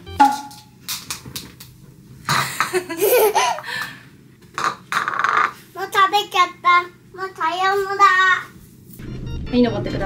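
A small child's voice in short bursts of babble, with background music coming in near the end.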